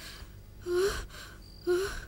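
A woman gasping: two short, breathy gasps about a second apart, each with a brief rising voiced catch.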